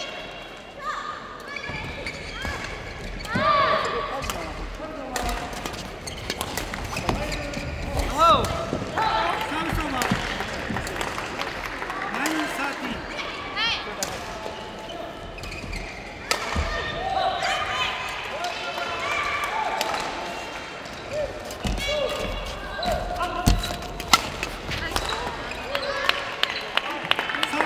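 Badminton play in an indoor hall: rackets hitting the shuttlecock in sharp cracks and court shoes squeaking on the floor, over voices in the hall.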